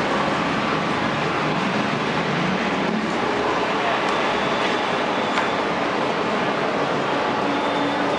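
Busy pedestrian street ambience: a steady rush of crowd noise with passers-by talking.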